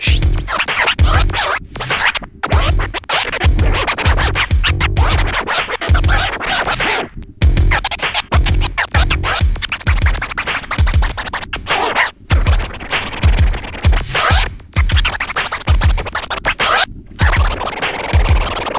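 Turntable scratching: a vinyl record is pushed back and forth by hand and chopped in and out with the mixer's crossfader, with sharp cuts, over a hip-hop beat with a steady kick drum.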